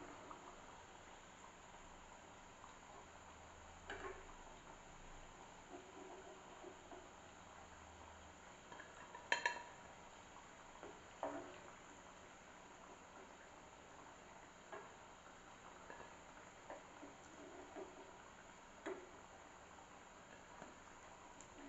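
A steel slotted skimmer clinking and scraping now and then against a frying pan as pieces are turned and lifted out of hot oil, over a faint steady hiss of frying; the loudest, ringing clink comes about nine seconds in.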